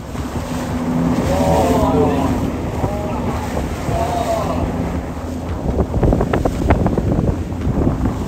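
Motorboat under way: a steady engine hum under wind buffeting the microphone, with a run of sharp knocks from the hull slapping through the chop in the second half.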